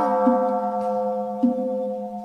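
A struck bell tone in the chant's accompaniment rings on steadily, its several overtones held level, over a low steady drone.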